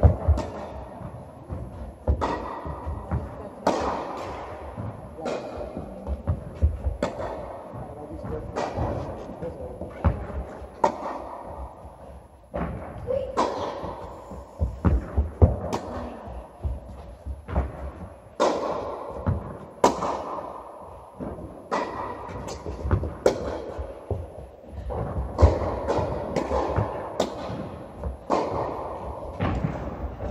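Tennis balls struck by rackets and bouncing on an indoor court, a sharp pop about every second or two, each one echoing around the large hall.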